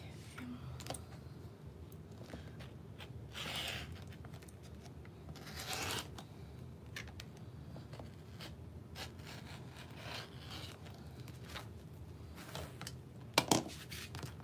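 Rotary cutter drawn along the edge of a plastic template through fabric on a cutting mat: a few separate scraping cutting strokes with small handling clicks between them, and a sharp knock near the end.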